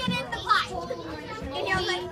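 Many children talking at once, an indistinct babble of young voices with no single voice standing out.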